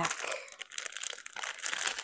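Plastic packaging bag crinkling irregularly as it is handled.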